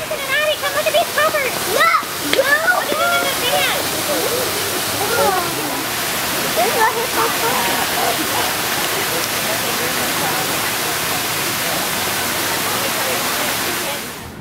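Steady rushing of running water, with high-pitched human voices over it for the first few seconds; the rushing cuts off suddenly at the end.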